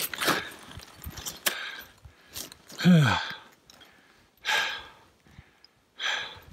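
A person breathing hard close to the microphone: several rushed breaths a few seconds apart, with one voiced sigh that falls in pitch about three seconds in.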